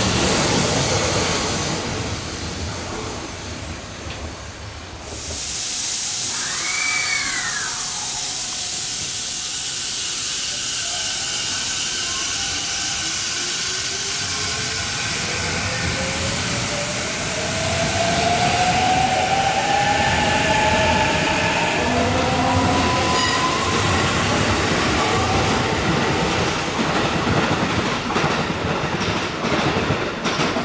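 Sanyo 6000 series train's Mitsubishi IGBT VVVF inverter and traction motors accelerating: a whine climbing steadily in pitch over several seconds, with a very high whine falling alongside it, over the rumble of wheels on rail.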